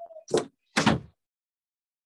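A brief tone, then two short thumps about half a second apart.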